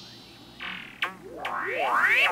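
Stylophone Gen X-1 run through effects pedals, making synthetic swept tones. A high tone fades out, then comes a short buzzy note and a click. From about the middle it sets into a chain of rising pitch sweeps, a little over two a second.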